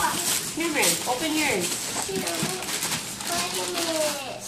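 Mostly talking: a woman's and young children's voices over one another, with some rustling as presents are handled in cardboard boxes.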